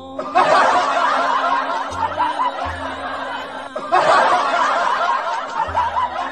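Laughter from many voices, like a canned laugh track, in two stretches with a short break near the middle, over background music.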